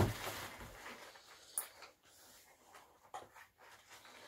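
A dog rummaging and eating with its head in a cardboard box of packing paper: the paper rustles and crinkles, with a knock against the box at the start and a few sharp crackles later.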